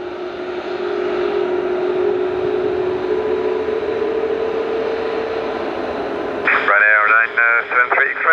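Airbus A380's jet engines running at taxi power, a steady whine and rush whose tone rises slightly in pitch midway through.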